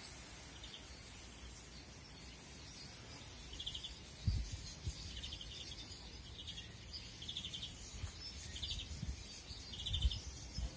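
Small finches in an aviary giving short, trilled chirps every second or so, starting a few seconds in, over a steady outdoor hiss. There is a single low thump about four seconds in.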